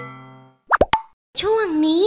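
The last notes of a bright mallet-percussion jingle ring out and fade, then a quick rising cartoon pop sound effect plays, followed by a sing-song cartoon voice announcing a segment title.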